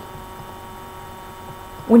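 A steady, faint electrical hum with low background noise fills a pause in speech. A woman's voice starts again right at the end.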